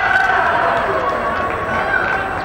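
Several people's voices calling and shouting at once during an indoor youth soccer game, with no words clearly made out.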